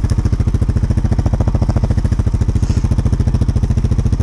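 Four-wheeler (ATV) engine running steadily at low speed, with an even, rapid pulsing exhaust beat.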